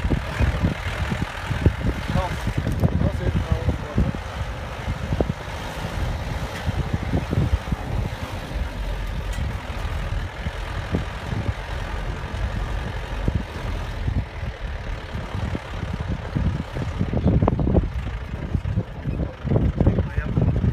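Wind buffeting the microphone in irregular low gusts.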